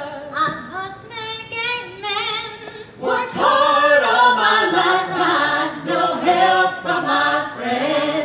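A group of voices singing together in harmony, fuller and louder from about three seconds in.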